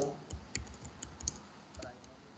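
Typing on a computer keyboard: a run of about eight separate key clicks.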